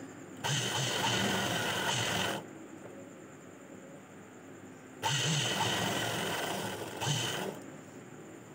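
Motor-driven Sandeep sewing machine stitching a seam through fabric, in two runs of about two seconds each: one starting about half a second in and one about five seconds in, with a quiet pause between them.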